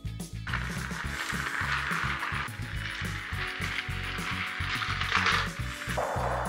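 Motorized Thomas & Friends toy trains running on plastic track: a steady mechanical whir and rattle, over background music.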